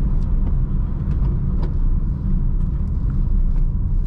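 Steady low engine and road rumble heard inside the cabin of a Honda car with a manual gearbox as it is driven slowly.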